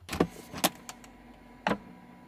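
A few short sharp clicks and knocks of plastic and metal latches as the top of a Nature's Head composting toilet is unlatched and tipped up off its solids bin, over a faint steady hum.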